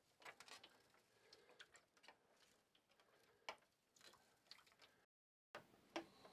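Near silence, with a few faint scattered clicks and ticks and a brief dead drop-out about five seconds in.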